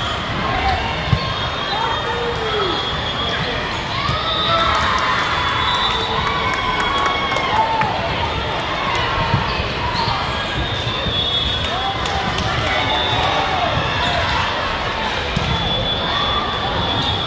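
Volleyball gym din: many voices echoing in a large hall, with sneakers squeaking on the hardwood court and a few sharp ball hits, one clear smack about a second in.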